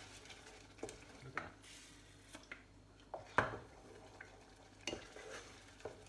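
A spoon stirring thick risotto in a saucepan, with scattered scrapes and knocks against the pan, the loudest about three and a half seconds in.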